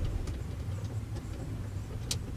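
Faint hands-on handling noise of wiring being worked behind a boat console's switch panel: a few light, scattered clicks over a low rumble.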